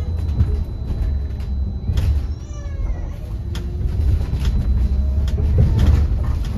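Interior of a Wright StreetDeck Electroliner battery-electric double-decker bus on the move: a steady low road and tyre rumble with scattered rattles and knocks from the body. A brief high, wavering cry sounds about two seconds in.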